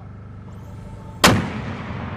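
A 120 mm mortar firing a single round about a second in: one sharp blast followed by a rumbling echo that fades slowly.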